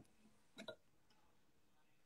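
Near silence: room tone, with two faint, brief sounds close together a little over half a second in.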